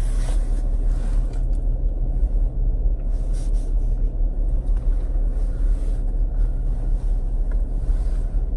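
Steady low rumble of a car heard from inside its cabin, typical of the engine idling. A few faint rustles come from a sneaker being handled.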